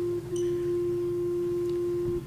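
Organ holding a single pure, flute-like note, briefly broken and re-sounded about a quarter second in.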